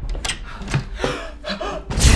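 A door opening and a man taking several sharp, gasping in-breaths as a sneeze builds up from a head cold.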